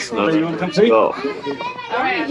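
Speech: children's voices talking and calling out.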